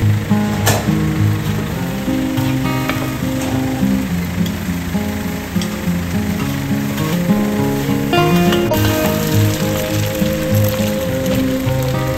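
Oil sizzling steadily in a wok as food fries, under background music with a moving melody.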